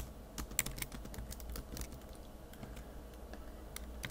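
Typing on a computer keyboard, faint: a quick run of key clicks over the first second and a half, then a lone click near the end.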